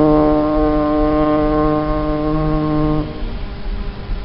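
Male voice chanting a Mouride khassida, holding the last syllable of a verse line as one long, steady note that stops about three seconds in, followed by a short pause before the next line.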